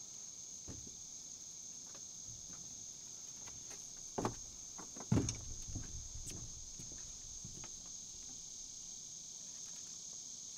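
Steady, high-pitched insect chorus. Over it, a few dull knocks, the loudest about five seconds in.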